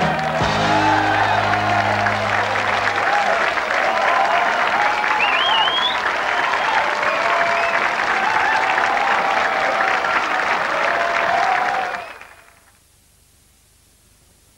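Studio audience applauding and cheering at the end of a song, over the band's final held chord for the first three seconds; the applause fades out about twelve seconds in.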